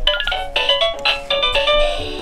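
Chicco Mr. Ring ring-toss toy playing an electronic tune of short beeping notes through its small speaker, with a low hum beneath as its motor starts turning the arms.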